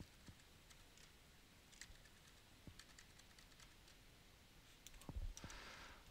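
Faint, scattered clicks of computer keyboard keys in near silence, a little busier near the end.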